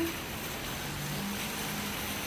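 Steady outdoor noise of wind on the phone microphone, with a faint low engine hum from a vehicle nearby.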